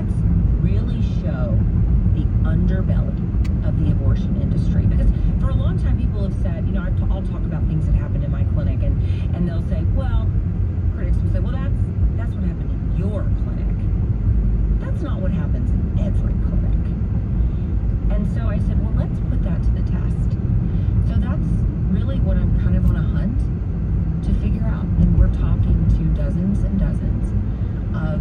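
Steady road and engine rumble inside a moving car's cabin, with a voice talking faintly over it.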